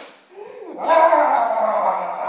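A dog giving a short falling cry, then a loud, drawn-out cry from about a second in.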